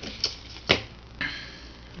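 Two light clicks about half a second apart, then a soft rustle: fingers handling an entomology pin and a pinned butterfly on a wooden layout board.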